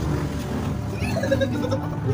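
Background music with steady low notes, and a short muffled vocal sound about a second in.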